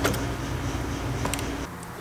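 A few light clicks from working a McLaren MP4-12C fuel pump out of its plastic surge-tank casing, over a steady low hum that cuts off near the end.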